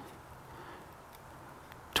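A few faint ticks and a light slide of a telescoping stainless whip section being pulled up by hand, over a quiet steady hiss.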